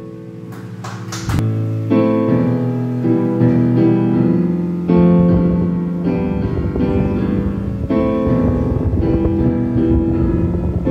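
Digital piano playing a chord progression. It starts about a second and a half in, after the last chord of the previous piece dies away, with chords changing roughly once a second.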